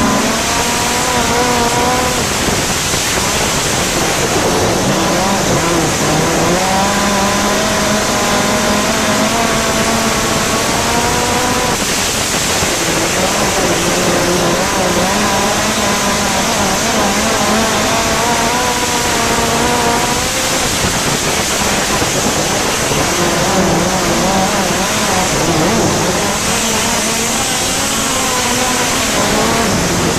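Gaerte 166 ci inline racing engine of a midget race car at full throttle, heard from the cockpit. Its pitch climbs and then dips every several seconds as the driver lifts for each turn, over a heavy rushing wind and track noise.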